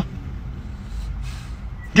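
Low, steady rumble of a car idling, heard from inside the car's cabin.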